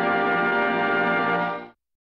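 Orchestral music from the trailer's score, ending on a long held chord that cuts off about one and a half seconds in.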